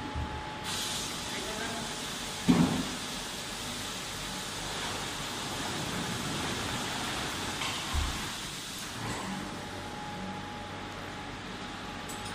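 Helicopter underwater escape training cabin (HUET dunker) being capsized in a pool: a steady rushing hiss of water and air as it rolls under, with a sharp knock about two and a half seconds in and a low thump near eight seconds.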